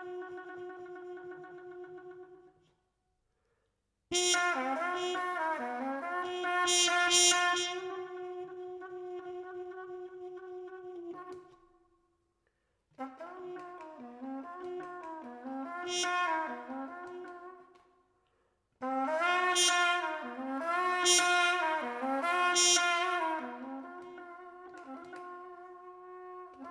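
Solo trumpet playing phrases of held and sliding tones. It breaks off into short silences three times, and each new phrase starts suddenly.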